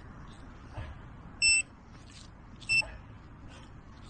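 Metal detector giving two short, high, steady-pitched beeps about a second and a quarter apart, signalling a metal target in the ground, over faint scratchy rustling.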